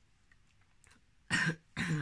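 A woman's single short cough about a second and a half in, after near silence: the tail of a choking fit that left her barely able to speak.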